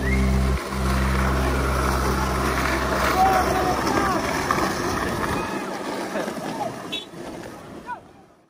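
Skateboard wheels rolling over asphalt in a crowd of skaters, with scattered voices calling out among them. Background music runs underneath and drops out about five seconds in, and the rolling noise fades away near the end.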